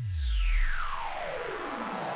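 Synthesizer sweep sound effect: one long downward pitch glide over a whooshing noise, with a deep bass tone under its first half second.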